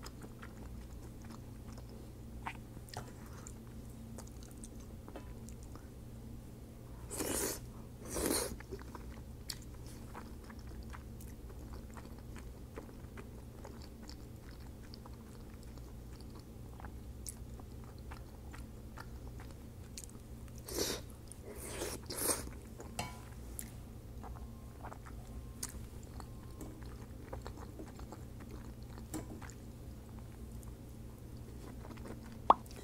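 Close-miked chewing and mouth sounds of soft creamy pasta, with many faint small clicks and four louder brief sounds, two about 7 and 8 seconds in and two around 21 and 22 seconds, over a steady low hum.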